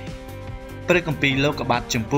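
Background music with steady held notes; about a second in, a voice starts reading scripture aloud in Khmer over it.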